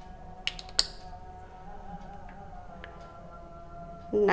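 Two sharp plastic clicks close together about half a second in, a flip-top cap on a plastic bottle being snapped open, with a couple of fainter ticks later on. Faint background music with steady held tones runs underneath.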